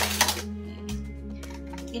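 A plastic box cutter clattering onto a tabletop at the start, a sharp click followed by a few lighter rattles, over steady background music.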